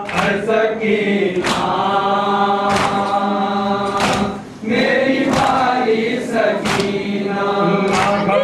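Mourners chanting a noha in unison, holding long notes, with a sharp chest-beating (matam) strike about every 1.3 seconds. The chant drops off briefly about halfway through.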